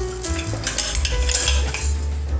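A rough scraping rustle lasting about a second, from a sandal insole and its glued strap upper on a board being fed between the steel rollers of a hand roller press, over background music with a melody and bass.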